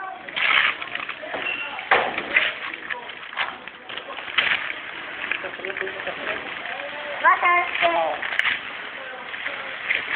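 Gift-wrapping paper crinkling and tearing as a present is unwrapped by hand, in a series of short, irregular rustles.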